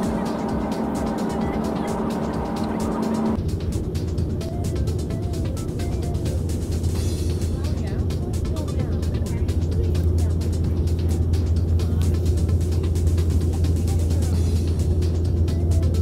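Airliner cabin noise on approach: a steady low rumble of engines and airflow, with a few steady tones at first that give way about three seconds in to a stronger, deeper rumble.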